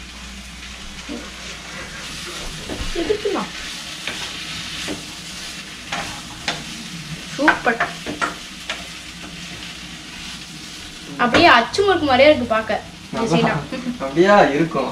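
Lotus root slices frying in hot oil in a pan on a gas stove: a steady sizzle, with a spatula now and then clicking and scraping in the pan as the slices are stirred.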